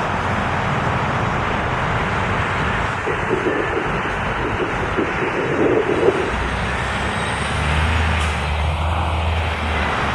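Diesel motor coach pulling away from a stop, its engine running under steady road noise; a deeper engine drone comes in about six seconds in and swells as the coach accelerates away.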